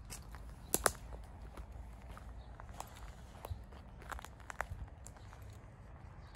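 Footsteps outdoors on leaf-strewn dirt and brush, coming irregularly, with two sharp snaps close together about a second in.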